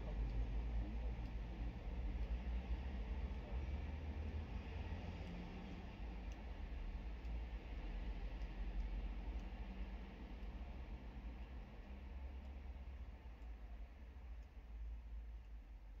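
Low steady rumble heard inside a stationary car's cabin, fading slowly, with a few faint light ticks scattered through it.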